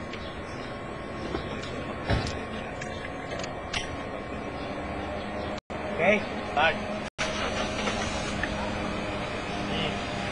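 A car engine idling steadily after being started. The sound cuts out briefly twice midway, and a short bit of voice is heard around the second cut.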